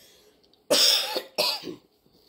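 A woman coughing twice, two short, sudden coughs well under a second apart, with her hand at her mouth.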